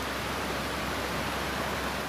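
A brook running: a steady, even rush of flowing water.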